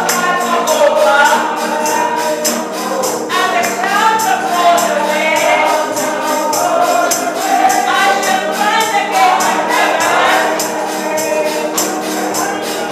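A congregation singing a gospel song together over a steady, evenly repeating tambourine beat.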